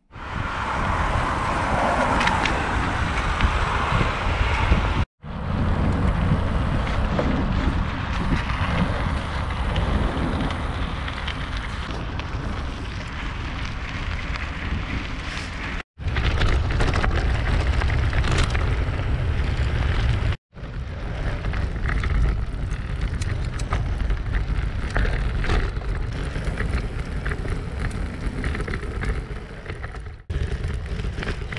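Mountain bike ridden along a frosty dirt and gravel track: wind rushing over the camera microphone, with the tyres crackling over loose stones. The sound drops out abruptly three times, briefly, where one riding clip cuts to the next.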